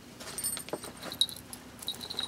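Handling noise as a stuffed pillow is pulled out of a cloth drawstring gift bag: rustling with many light clicks and a few brief high clinks.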